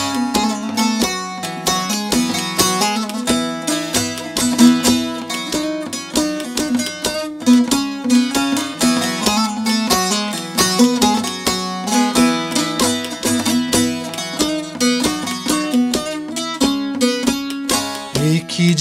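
Bağlama (Turkish long-necked saz) played solo: rapid plucked and strummed notes of an instrumental interlude between sung verses, over a steady ringing low drone from the open strings.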